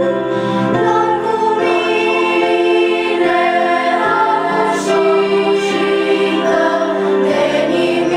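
Children's choir singing a song, held notes moving in steps, over long sustained low accompaniment notes.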